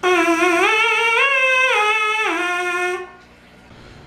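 A cornet mouthpiece buzzed on its own, without the instrument, giving a bright tone. The pitch climbs in steps and then comes back down in one short phrase, stopping about three seconds in.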